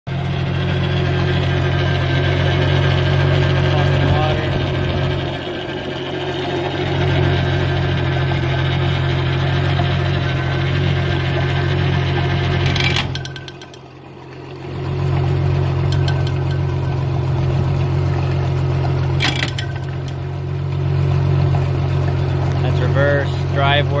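Outboard motor running steadily out of the water on a trailer, cooled by a garden hose, with water splashing from the lower unit. Its sound dips once early on and drops away sharply for about a second halfway through before it picks up again.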